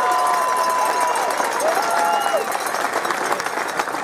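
Outdoor crowd applauding and cheering, with scattered shouts and whoops over the clapping.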